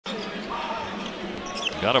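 A basketball being dribbled on a hardwood court over steady arena background noise. A man's commentary voice comes in near the end.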